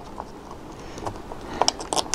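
Scattered light clicks and taps of hands handling a DC power splitter while sliding it into place on the telescope, with a quick run of sharper clicks near the end.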